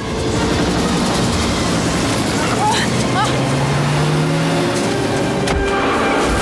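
Film car-chase soundtrack: car engines running hard under an action music score, mixed into a dense, steady wall of sound. There are a few short gliding cries in the middle and a slowly rising engine note about halfway through.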